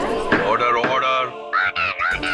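A green parakeet calling in a string of squawks in quick succession, each call rising and falling in pitch.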